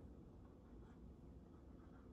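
Faint strokes of a dry-erase marker writing numbers on a whiteboard, over near-silent room tone.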